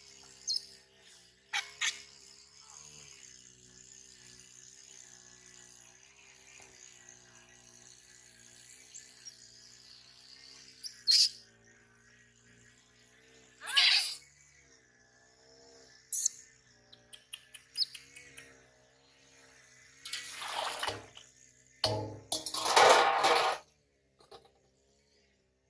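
Water splashing in a steel basin as a baby macaque is dipped and bathed, a few short splashes midway and the loudest, longer splashing near the end. Faint high chirping and a soft steady background of tones run underneath.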